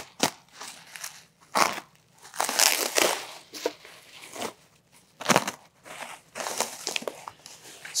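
Bubble wrap and a plastic bag crinkling and rustling as they are pulled and torn off a small packed item, in irregular bursts with short pauses between.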